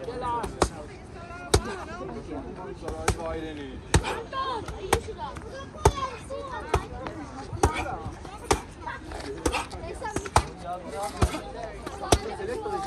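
Punches or kicks landing on a hand-held striking pad: about a dozen sharp slaps, roughly one a second, over people talking.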